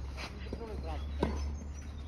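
A single sharp tennis ball impact about a second in, during a rally on an outdoor court, over a steady low rumble.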